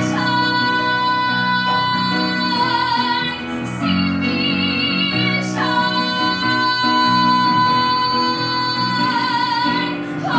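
A woman belting long, held high notes over piano accompaniment. There are two sustained notes, the second starting a little past halfway, each ending with vibrato.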